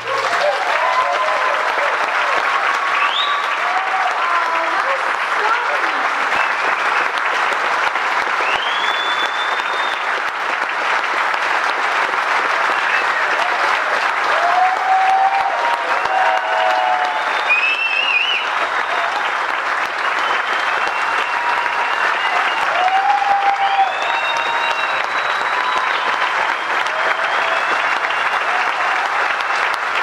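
Concert audience applauding and cheering steadily, with shouts and whoops rising above the clapping, as the band takes its bows after the last song.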